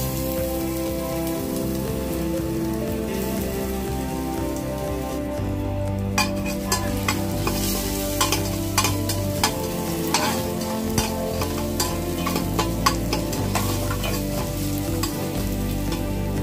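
Chopped aromatics and seeds frying in hot oil in an open aluminium pressure cooker, with a steady sizzle. From about six seconds in it crackles with many sharp pops and the scrape and tap of a spatula stirring in the pot.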